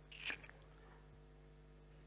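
Near-silent room tone with a faint steady electrical hum, and one brief soft noise about a quarter second in.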